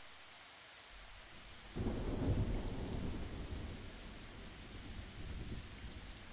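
Steady rain falling, with a low roll of thunder coming in about two seconds in and slowly fading away.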